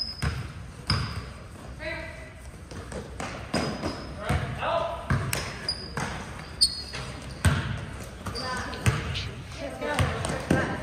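Basketball game sounds in a gym: the ball bouncing on the court in irregular thuds, sneakers squeaking briefly on the floor, and players and spectators calling out, all echoing in the hall.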